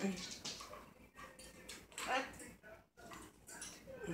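Blue-fronted Amazon parrot making a few soft, short calls, the clearest about two seconds in.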